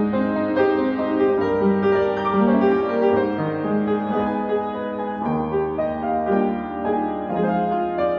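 Yamaha B1 upright acoustic piano played with both hands: a continuous passage of chords and melody notes.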